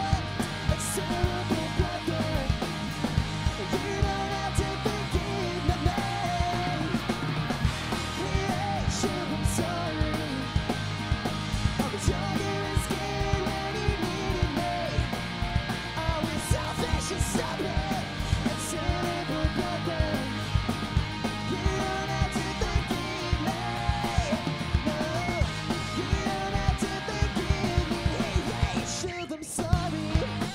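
Pop-punk band playing live: electric guitars, electric bass and drum kit with steady cymbal and drum hits, under a lead vocal with a backing vocal from the bassist.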